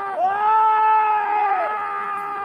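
A voice held in long drawn-out notes: one long note after a short dip in pitch near the start, sliding down into the next near the end.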